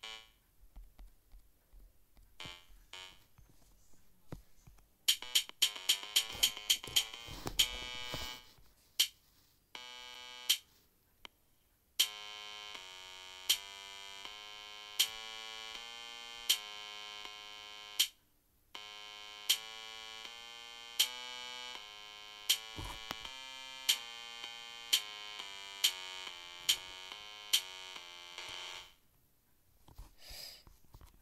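Chrome Music Lab Song Maker playing back an electronic synth melody over drum-machine beats. A quick run of notes comes about five seconds in; from about twelve seconds in, slow held notes step up and down in pitch with a drum hit about every one and a half seconds, stopping shortly before the end.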